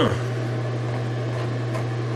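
A steady low hum with a faint hiss above it, unchanging throughout; a spoken word trails off right at the start.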